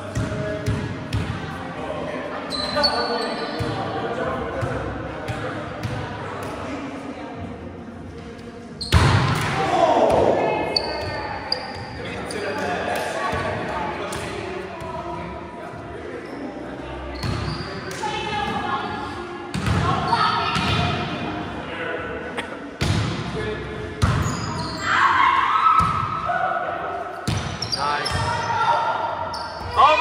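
Indoor volleyball being played: the ball slapping off players' hands and arms and bouncing on the court floor, a string of sharp hits at uneven spacing that echo in a large hall, the loudest about nine seconds in. Players' voices call out between hits, one shouting "Over!" near the end.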